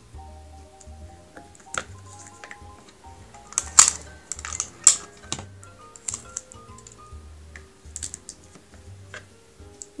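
Soft background music with a simple melody and bass line, over short crackles and clicks of sticky tape being pulled off the roll, torn and pressed down by hand; the loudest crackles come a little before and about five seconds in.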